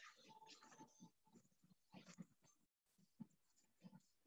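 Near silence: room tone with a few very faint, scattered soft sounds.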